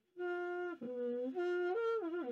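Trumpet played with a quiet mute in the bell: a short phrase of about five held notes, stepping up and down in pitch. The mute makes it sound quiet.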